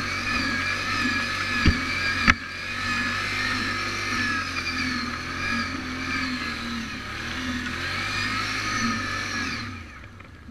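ATV engine running at low, varying throttle on a muddy trail, its pitch wavering up and down. Two sharp knocks come about two seconds in, and the engine sound falls away just before the end.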